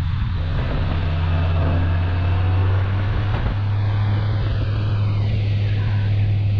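Motorcycle engine running steadily under way, a constant low drone with wind and road noise over it; the engine note dips briefly about three and a half seconds in.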